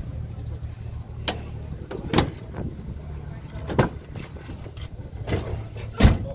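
Steady low vehicle hum heard inside a light truck's cab, with several sharp knocks and clicks over it, the loudest about two seconds in and again near four seconds.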